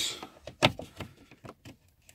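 A few light clicks and knocks from hands handling the plastic centre-console trim and socket, the loudest about two-thirds of a second in.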